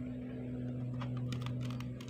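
Steel awl point tapping and scraping on a plywood board, a quick cluster of light clicks starting about a second in, over a steady low hum.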